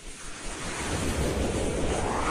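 Whoosh sound effect of an animated logo intro: a rush of noise swelling up like wind, with a tone sweeping upward from about a second in.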